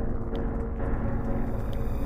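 Low, dense rumbling drone of horror soundtrack music.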